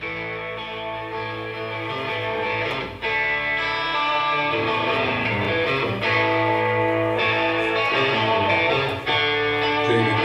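Live rock band playing an instrumental intro led by strummed electric guitar chords over bass and drums. It builds in volume over the first few seconds, with a chord change about every three seconds.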